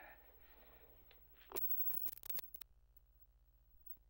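Steady low electrical hum on the sewer-camera recording, with a quick run of sharp clicks and scrapes about a second and a half in and one more click near the end, from handling the camera rig as it is pushed down the line.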